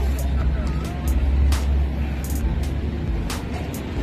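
Steady low traffic rumble with scattered sharp clicks and knocks, and faint voices in the background.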